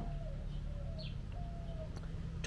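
Faint bird calls: low, drawn-out notes that fall slightly, with a brief higher chirp about a second in, over a steady low background hum.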